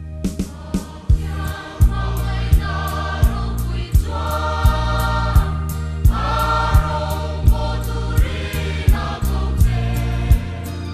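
Choir singing a hymn in harmony over instrumental accompaniment with deep bass notes and a steady beat; the voices come in about a second and a half in.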